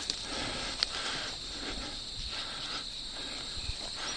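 A steady, high trill of crickets and other insects in the grass, with soft rhythmic swishing footsteps through the grass.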